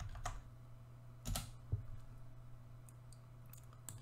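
A few faint computer clicks, keyboard and mouse, the loudest about a second in, over a low steady hum: a prompt being entered into a chat box and sent.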